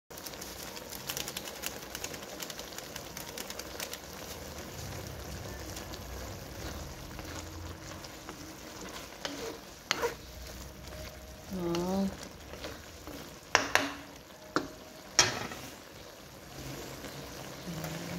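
Eggplant and pork adobo sizzling in its sauce in a wok, stirred with a wooden spatula that scrapes and clicks against the pan. A few sharp knocks stand out about ten seconds in and again near fourteen and fifteen seconds.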